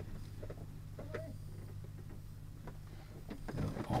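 Faint steady low hum of the tow plane's engine idling ahead, heard from inside the glider's closed cockpit, with a few small clicks.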